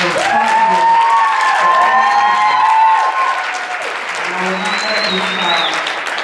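Audience applauding, with drawn-out cheering voices rising and falling in pitch over the clapping in the first few seconds.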